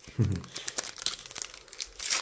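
Foil wrapper of a Panini Top Class 2024 trading-card packet crinkling and tearing as it is opened by hand: a dense run of small crackles.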